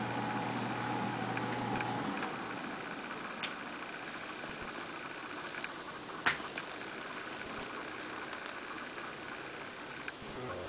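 A steady mechanical hum that cuts off about two seconds in, leaving faint room noise with a light click about three and a half seconds in and a sharper click about six seconds in.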